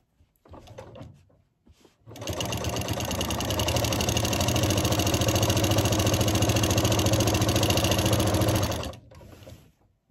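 Singer Quantum Stylist 9960 sewing machine, fitted with a walking foot, stitching a straight quilting line through the layers of a quilt. It starts about two seconds in, comes up quickly to a steady, fast run of stitches and stops about a second before the end.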